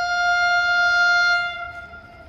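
Train horn sounding one long, steady blast on a single pitch, cutting off about one and a half seconds in.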